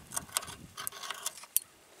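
Metal carabiner being unclipped from a braided steel cable: a few light metallic clicks and jingles over the first second and a half.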